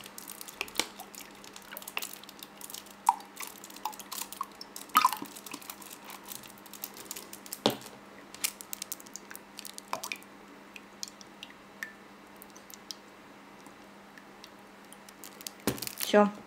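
Cream being poured into a ceramic mug: small drips and glugs with scattered clicks, thinning out after about ten seconds. A faint steady hum runs underneath.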